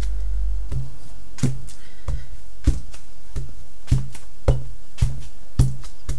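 Wooden-block rubber stamps pressed down one after another onto a padded car sun shade on a tabletop: about nine sharp taps, unevenly spaced around half a second apart, each with a brief low thud.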